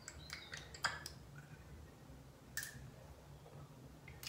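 Faint small clicks of a dropper bottle's screw cap being twisted open and the glass dropper drawn out, several in the first second and one more about two and a half seconds in.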